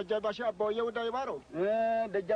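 A single man's voice calling out loudly in a sing-song chant, in a language the recogniser did not write down, ending on a long held note.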